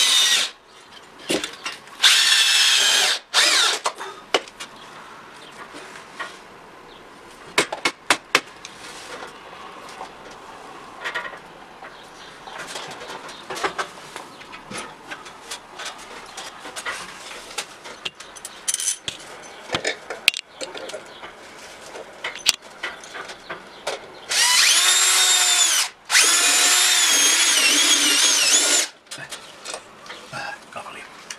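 Power drill-driver running in bursts, driving the screws that fix an air-conditioner outdoor-unit wall bracket into plugged holes, its whine wavering in pitch as it loads. A short run about two seconds in and two longer runs near the end, with scattered clicks and handling knocks between.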